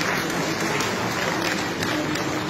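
A crowd applauding: a steady, dense patter of many hands clapping.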